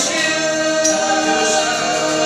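Mixed vocal group singing a worship song in harmony on long held notes, with a tambourine shaken a couple of times.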